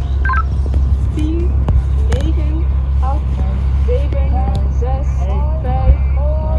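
Steady low rumble of wind on the microphone, with many short rising chirps over it. A brief two-tone electronic beep comes about a third of a second in.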